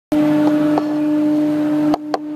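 A ship's horn sounding one long, steady blast, with a few faint clicks over it.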